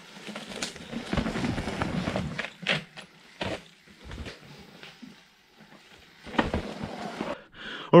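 Mountain bike riding along a dirt forest trail: tyres rolling over the ground with rattles and several sharp knocks from the bike. It goes quieter about five seconds in, then comes one more loud knock.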